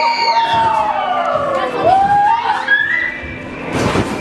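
A young person's long drawn-out yell that slides down in pitch over about two seconds, followed by a shorter rising yell, as kids flip on trampolines.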